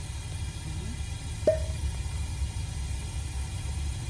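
Steady low rumble of a Toyota car's engine and road noise, heard inside the cabin, with one short sharp click about one and a half seconds in.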